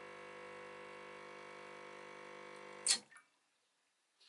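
Lelit Mara X espresso machine's vibration pump humming steadily while pulling a shot, then cutting off with a sharp click about three seconds in as the shot is stopped.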